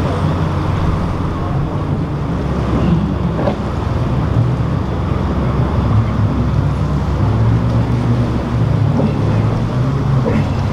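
Powerboat engines running steadily with a low hum as craft pass through the inlet, over water wash and wind buffeting the microphone.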